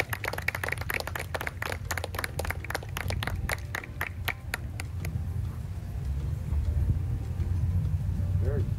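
A small crowd applauding, the hand claps thinning out and stopping about five seconds in, over a steady low rumble.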